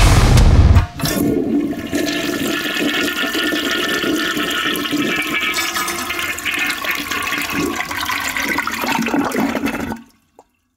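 A rock band (drums, guitar and bass) plays loudly and cuts off abruptly under a second in. A toilet flush follows, a rush of water lasting about nine seconds that stops near the end.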